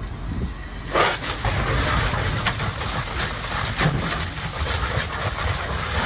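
A room fire burning with a low rumble, then about a second in a fire hose stream opens onto it: a loud, steady rush of water spray and hissing steam, with scattered sharp pops as the water knocks the fire down.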